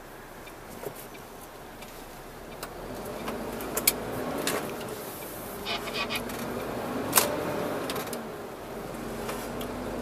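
Inside a lorry cab on the move: steady engine and road noise that grows louder about three seconds in as the truck gathers speed. A few sharp clicks and rattles come through it.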